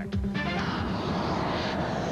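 Jet aircraft flying past, its engine noise swelling in about half a second in and holding steady, with music underneath.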